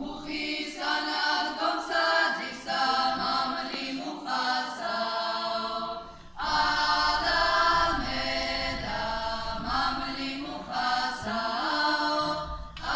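A group of male and female voices singing a Georgian folk song unaccompanied, in short phrases with a clear break about halfway through.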